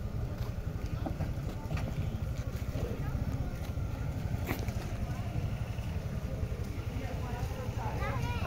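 Car engine idling close by, a steady low rumble with faint voices in the background.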